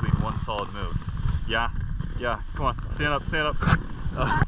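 Indistinct human voices, with no clear words, over a steady low rumble of wind on the microphone.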